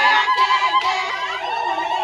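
Women ululating: a high trilling voice call, warbling rapidly for about the first second, over other high voices calling and singing at once.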